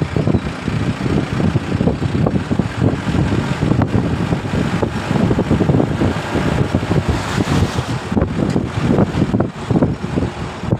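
A moving vehicle's ride noise: a loud, choppy low rumble of engine and road noise mixed with wind buffeting the microphone.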